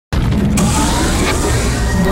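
Radio station ident opening: a loud sound effect with a deep bass rumble that starts abruptly, with a sharp hit about half a second in, leading into the station jingle music.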